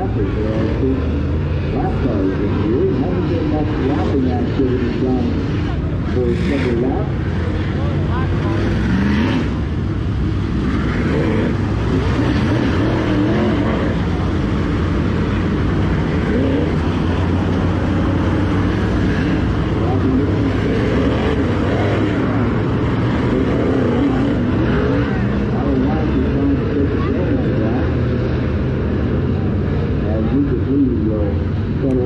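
DIRTcar UMP Modified race cars' V8 engines running at speed around a dirt oval as the field laps past. The sound holds steady throughout, with voices over it.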